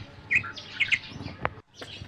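A few short bird chirps in the background, with a single sharp click about one and a half seconds in.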